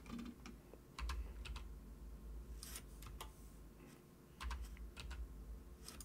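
Computer keyboard keys tapped faintly in short irregular clusters, shortcut presses while working in Blender, over a low steady hum.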